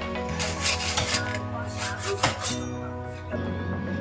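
A paintbrush rubbing on a painted wooden hull, several quick strokes in the first two and a half seconds, over background music.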